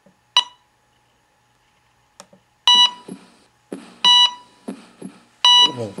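Electronic heart-monitor beeps: one short beep near the start, then three louder short beeps evenly spaced about a second and a half apart, each marking a heartbeat.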